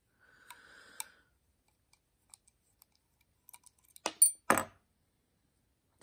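Small metal-on-metal clicks and taps as a precision screwdriver is set to the pivot screw of a Spyderco Paramilitary 2 folding knife and the knife's parts are handled, with a cluster of three or four sharp, louder clicks about four seconds in.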